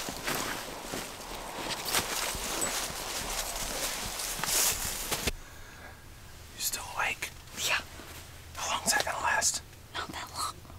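Footsteps of people walking, with a steady hiss of noise under them. About five seconds in the sound cuts abruptly to a quiet background with a few short bursts of whispering.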